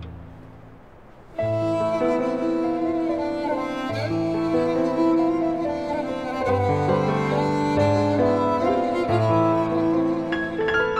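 Background music: a bowed-string score with long held notes that change every second or so. The earlier music fades out at the start, and the new string passage comes in suddenly about a second and a half in.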